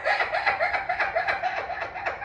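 A woman laughing: a fast, steady run of short high-pitched giggles, about seven or eight a second.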